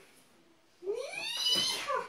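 A short quiet gap, then one long, high-pitched whining call that slides up in pitch and is held for about a second.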